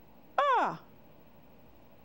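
A single Mandarin vowel syllable spoken with a steep falling pitch, the fourth tone, about half a second in, modelled as a pronunciation example for repetition.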